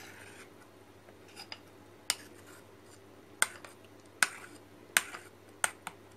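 A spoon stirring a wet mixture in a bowl, clinking against the bowl about six times at uneven intervals of roughly a second in the second half, over a faint steady low hum.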